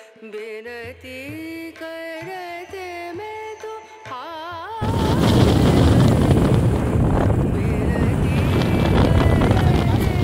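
Background music with a bending, ornamented melody, cut off suddenly about five seconds in by loud, steady wind rush and road noise from riding a motorbike.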